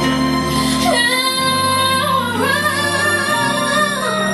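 A woman singing into a handheld microphone over backing music; her voice slides down about a second in, then rises to a long held note that ends near the close.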